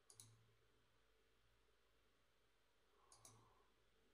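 Two faint computer mouse clicks about three seconds apart, over near silence.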